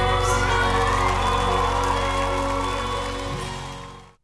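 The last held note and chord of a pop duet with live band, with audience cheering and applause coming in over it; it all fades out near the end.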